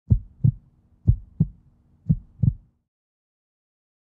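Heartbeat sound effect: three slow double thumps, about one a second, over a faint low hum, which stop about two and a half seconds in.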